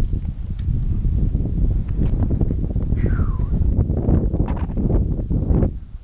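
Wind buffeting the microphone outdoors, a steady low rumble. A short falling whistle sounds about three seconds in.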